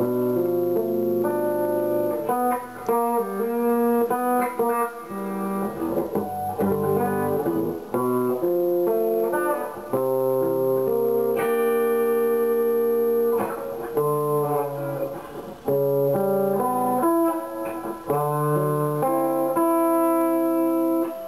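SG electric guitar playing a slow run of chords, each struck and left to ring for about a second, with one chord held for a few seconds near the middle.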